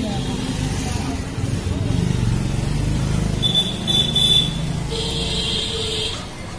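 Street background: steady low traffic rumble with indistinct voices, a high-pitched tone lasting about a second around the middle, and another high tone with a lower one beneath it near the end.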